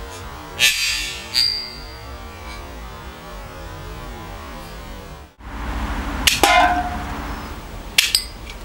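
Red Zappa bottle-cap gun fires with a sharp snap, and under a second later the cap strikes an empty aluminium can with a short, high metallic ping. Near the end a second metallic clang with a lower ring follows as a can is knocked over.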